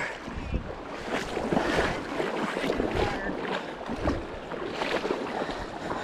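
River water splashing and lapping at the bank as a hooked sockeye salmon is drawn in near the surface, with wind on the microphone and scattered small knocks.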